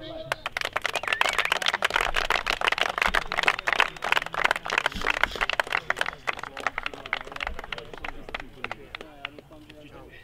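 A small group of people clapping by hand, dense at first and dying away over the last few seconds, with a few voices underneath.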